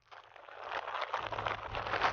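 An empty feed sack crinkling and rustling as it is shaken and waved about, a continuous crackly rustle that builds up over the first half second.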